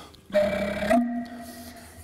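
Old wooden organ pipe blown by mouth, sounding one steady note. The note steps slightly higher about a second in and then fades out.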